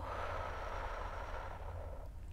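A woman's long, slow exhale through the mouth: a breathy hiss lasting under two seconds and fading out just before the end.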